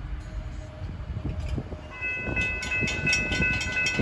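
A train coming through the grade crossing: low rail rumble that grows louder from about halfway, with a rapid run of clicks and steady high-pitched ringing tones setting in at the same time.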